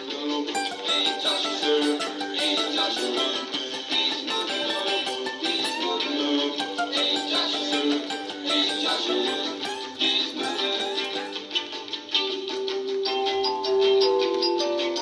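Instrumental passage of a song with a strummed acoustic guitar keeping a steady rhythm and no singing. Near the end, held notes from another instrument come in.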